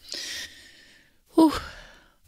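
A woman's long, breathy sigh lasting about a second, then a soft voiced "Ooh": a moved reaction, as she is near tears.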